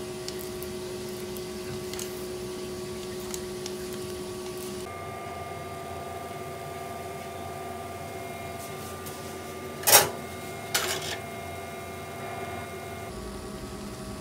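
A steady electrical hum whose pitch changes about five seconds in, with light ticks in the first part. A short, sharp noise about ten seconds in is the loudest sound, and a second, weaker one follows a moment later.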